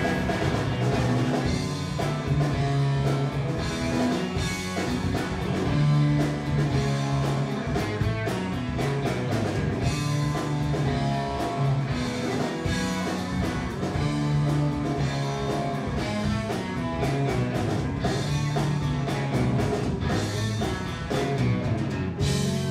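Live blues-rock band playing an instrumental passage: two electric guitars over electric bass and a drum kit, with the bass line repeating a low figure in a steady pattern.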